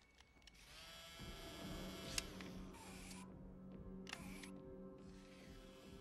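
Quiet film score with sustained held notes that swell in about a second in. A sharp click comes about two seconds in, and short small mechanical whirs follow from the handheld extraction tool.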